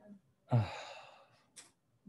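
A man's long sigh: a short voiced start fading into a breathy exhale over about a second, followed by a brief hiss.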